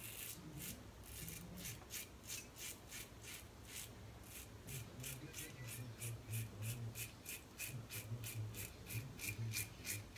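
Double-edge safety razor (Razor Rock Hawk) with a new blade scraping through stubble and lather on the neck in short, quick strokes, about four a second.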